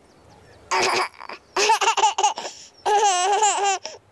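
A baby giggling and laughing in three short bouts.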